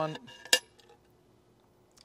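A single sharp metallic clink about half a second in, as a long steel screw and washer knock against the GIVI Monokey aluminium base plate while being fitted.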